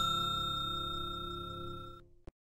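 Ringing of a bell-like notification chime sound effect, several clear tones fading steadily away after being struck just before, cut off abruptly at the end.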